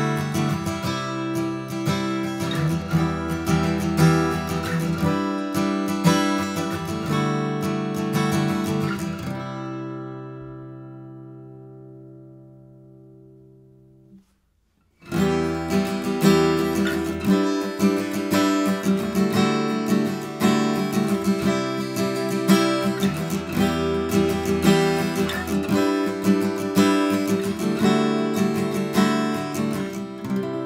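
Steel-string acoustic guitar strumming: a Martin D-18 dreadnought is strummed for about nine seconds, and its last chord is left to ring and fade. After a moment of silence, the same strummed passage starts again on a cheap Squier by Fender acoustic guitar.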